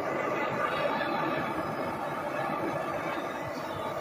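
Hand-held propane torch flame hissing steadily as it scorches bare wood.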